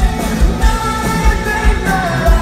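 Live pop-rock band playing loudly with sung vocals over a steady kick-drum beat about twice a second.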